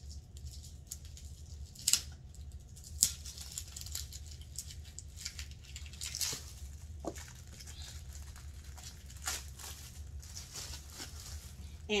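Clear plastic protective wrap on a leather handbag's handles crinkling and rustling as the bag is handled, with two sharp clicks about two and three seconds in.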